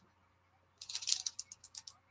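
A quick rattle of small, sharp clicks lasting about a second, starting about a second in.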